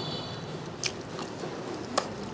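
A person chewing a bánh khọt, a small rice-flour cake with a slightly crisp crust, close to the microphone. Two short sharp crunches or clicks come about a second apart.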